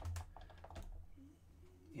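Several quick, light clicks in the first second, then faint room noise.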